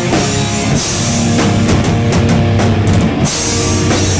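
Hardcore punk band playing live and loud: distorted electric guitars over a pounding drum kit. Midway through, the band hits a run of tight stop-start accents before the full sound returns.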